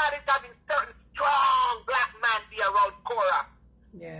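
Speech only: a woman talking in quick phrases.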